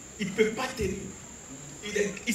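A man's voice through a microphone and PA, a few short phrases in the first second and again near the end, with a steady faint high-pitched tone underneath.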